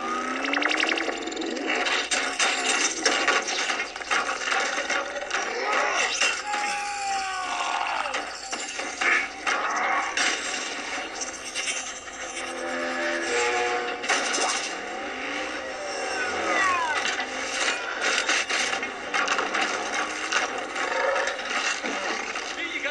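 Action-film chase soundtrack: a music score under repeated crashes, metal impacts and scrapes, and sweeping mechanical effects.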